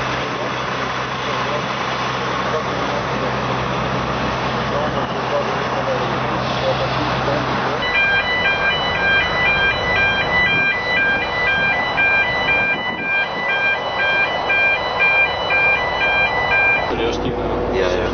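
Engine hum and outdoor noise. About eight seconds in, a two-tone electronic warning signal starts, alternating steadily between a higher and a lower pitch for about nine seconds while a lorry passes through a mobile customs X-ray scanner. It is typical of the scanner's warning beeper during a scan.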